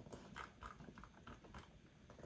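Faint, irregular clicks of a computer mouse and keyboard, about five in two seconds, the strongest near the start.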